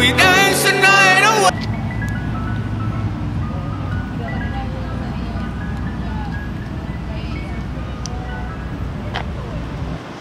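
A pop song with a singing voice plays and cuts off suddenly about a second and a half in. Then city street noise follows, a low steady traffic rumble, with the faint tinkling chime melody of an ice cream truck jingle.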